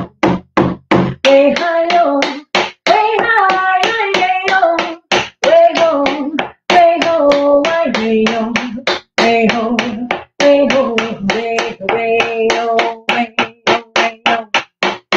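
A woman singing a traditional Indigenous song over a steady hand-drum beat of about four strokes a second. The drum plays alone for about the first second before the voice comes in, and the singing breaks off briefly a few times while the drum keeps going.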